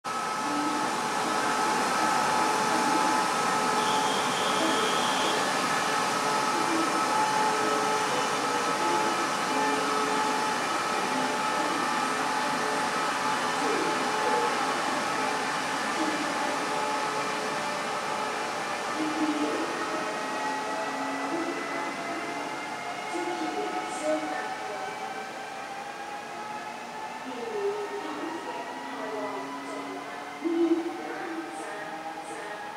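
Electric trains in an underground station: a steady rail rumble with several steady whining tones, louder in the first half, and from about twenty seconds in a faint whine slowly rising in pitch as a Taiwan Railway EMU700 electric multiple unit pulls in along the platform.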